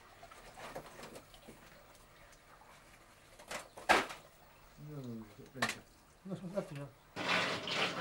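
Faint wet splashing as rusted metal is worked loose in a waterlogged underground tunnel. Three sharp knocks come around the middle, the second the loudest. Short muffled voices follow near the end.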